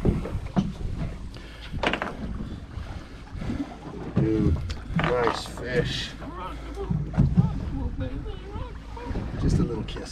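Steady low wind noise on the microphone aboard an open boat at sea, with faint, indistinct men's voices and a few sharp knocks.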